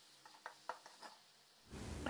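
Very faint taps and scrapes of a perforated steel ladle stirring in an aluminium kadai: a few light clicks in the first second, otherwise near silence.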